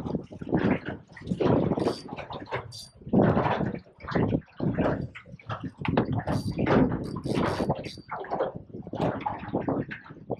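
Water slapping against the side of an aluminium boat hull in irregular thumps and splashes.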